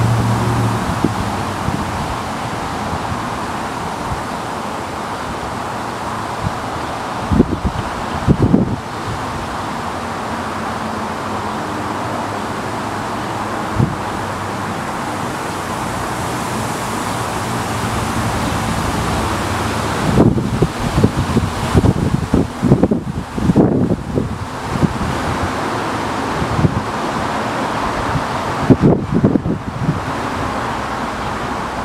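Wind buffeting the microphone over a steady rushing noise, in rough gusts about a third of the way in, for several seconds after the middle, and again near the end.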